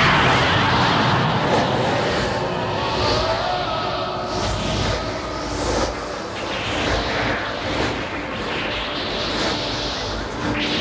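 Film soundtrack of a dense rushing noise with repeated whooshes rising and falling every second or two, and a few faint tones sliding in pitch.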